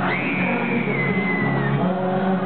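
Live pop ballad played through an arena sound system, with band accompaniment and a male lead vocal. A high note rises sharply at the start and is held, sliding slightly lower, for about a second and a half.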